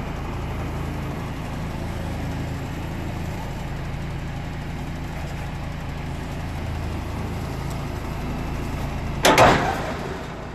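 Truck's diesel engine running steadily at low revs as it reverses slowly onto a tandem trailer's drawbar. About nine seconds in there is one loud boom as the drawbar eye strikes the truck's trailer coupling and the coupling bolt snaps shut.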